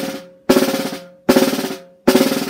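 Snare drum buzz strokes, each stick pressed into the head so the stroke crushes into a fast run of bounces, played one at a time with alternating hands. The strokes come a little under one a second, each fading over about half a second.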